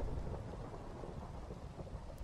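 Faint, steady rain ambience with a low rumble, from a rain-and-thunder background track.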